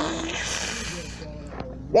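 Cartoon soundtrack: a monster's breathy hiss lasting about a second, following the tail of a rising vocal cry at the start, then fading away.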